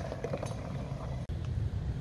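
Nissan Xterra engine running with a low, steady rumble during an off-road hill climb.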